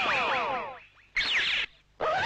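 Electronic sci-fi sound effect: a rapid cascade of falling whistle-like sweeps that fades out within the first second, then a short second burst of quick gliding tones about halfway through.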